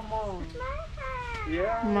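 A high-pitched, drawn-out wordless vocal sound from a person, gliding down and then rising and falling again in pitch, with a meow-like quality.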